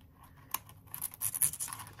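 A pointed craft pick scraping against a thin metal cutting die, with a sharp tick about half a second in and then a scratchy rasp through the second half.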